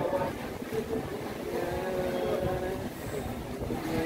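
Wind buffeting the microphone, a low uneven rumble, with faint voices in the background.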